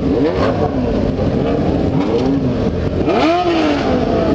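Motorcycle engines revving in a group at low speed, with several quick rev sweeps rising and falling: a short one just after the start, another around the middle, and a bigger one about three seconds in, over a steady low rumble of engines and wind.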